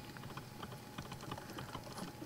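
Faint, irregular light clicking over a low hiss, like keys being typed, in a pause between spoken phrases.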